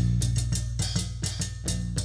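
Live band playing an instrumental passage: a drum kit keeps a steady, even beat of snare and bass drum strokes over low bass notes, with no singing.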